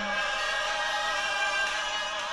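Christian worship song: choir voices hold a sustained chord between lines of the lead vocal.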